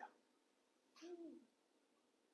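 Near silence in a pause in speech, with one faint short hum about a second in.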